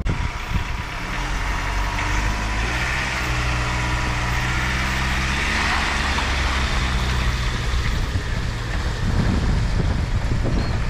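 Pickup truck engine running steadily at low revs while towing a boat on its trailer up a ramp, with a steady hiss over it.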